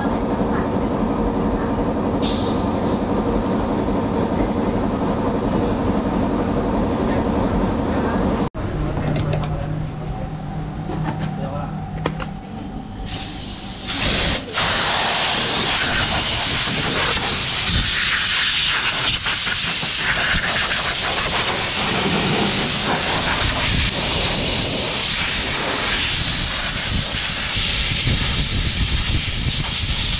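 A steady mechanical hum for the first third, cut off abruptly. After a quieter stretch, from about halfway on, a compressed-air blow gun hisses loudly and steadily as it blows water off the scooter's bodywork.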